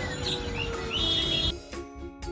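Busy shop ambience with short bird chirps and a long, slowly falling tone. About one and a half seconds in it cuts to background music of bell-like mallet notes.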